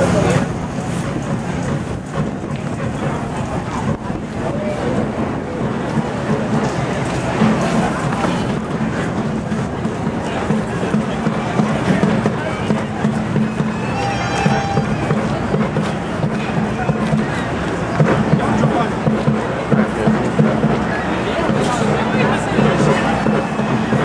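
Street crowd of marching protesters: many voices talking and calling over each other, with music and a steady low hum underneath. A short pitched sound, like a whistle or horn toot, rises above the crowd about two-thirds of the way through.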